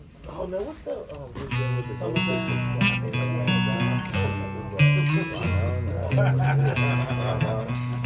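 Acoustic guitar picking out a short riff of single low notes, each held about half a second, that the player stops and laughs off as one he can't play.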